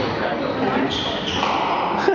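Squash ball thudding off the walls and racquet during a rally, with spectators' voices over it.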